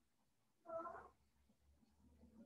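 Near silence, broken by one faint, short pitched call about half a second long, a little after half a second in. A faint low hum follows.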